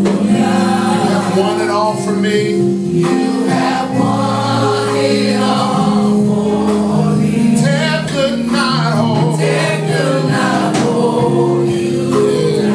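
Live gospel praise-and-worship music: a choir of singers with steady held notes underneath, continuous and loud.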